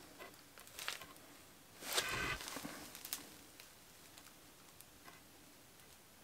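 Faint handling sounds of cut laminated chipboard pieces moved in the hands: a short rustle, then a brief scraping rub about two seconds in, and a few light clicks.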